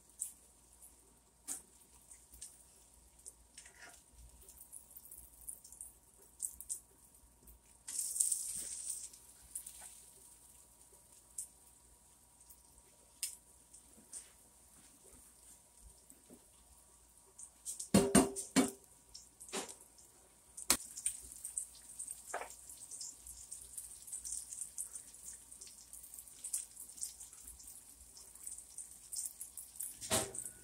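Egg-battered eggplant frying in oil in a cast-iron skillet: a faint, steady sizzle with scattered crackling pops. The sizzle swells about eight seconds in and again through the last third, and a cluster of sharper knocks comes a little past halfway.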